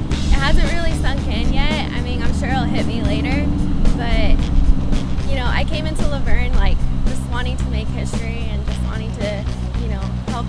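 Background rock music with sustained low notes and a wavering voice line, running at a steady loud level, with a young woman's voice in the same band.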